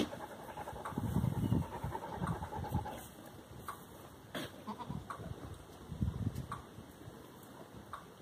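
Kiko goats bleating softly: a few short, low calls spread through the seconds, strongest about a second in and again around six seconds.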